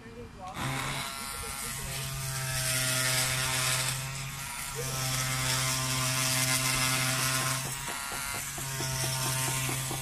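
Handheld oscillating multi-tool running against a white building block, giving a steady electric buzz. It starts just under a second in, cuts out briefly twice, and switches on and off in quick stutters near the end.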